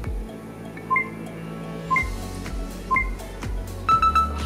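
Background music with countdown-timer beeps: three short beeps about a second apart, then a longer beep of a different pitch near the end as the timer reaches zero.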